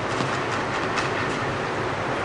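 Steady rushing background noise of an indoor tennis hall, with a few faint sharp knocks of tennis balls bouncing or being struck, the clearest about a second in.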